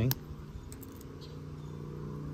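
A slipjoint pocketknife's carbon-steel blade being opened by hand: one sharp metallic click as it snaps against the backspring, then a few faint clicks. The cam tang gives no half stop. A steady low hum runs underneath.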